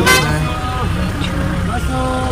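Voices calling out with held notes inside a moving van, over the steady low rumble of its engine. A short sharp burst comes right at the start.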